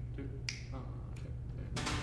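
Three sharp finger snaps about two thirds of a second apart, counting off the tempo of a jazz tune, over a faint steady low hum.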